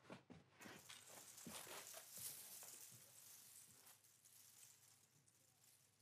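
Near silence: quiet room tone with a faint hiss and a few soft knocks in the first few seconds, fading away toward the end.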